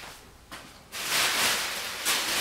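Tissue paper rustling and crackling as it is picked up and handled, starting about a second in.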